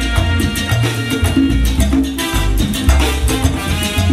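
A salsa orchestra playing live, with a moving bass line under pitched instrument lines and steady percussion.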